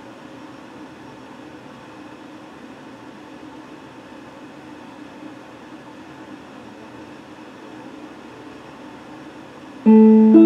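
Steady faint hiss for most of the time, then right at the end an electric guitar comes in loudly with a sharply struck, ringing note.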